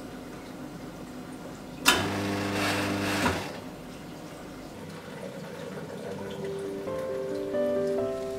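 La Marzocco Linea Mini espresso machine starting up when switched on: a sharp click, then a motor hum with hiss for about a second and a half that stops abruptly. Soft music with held notes comes in near the end.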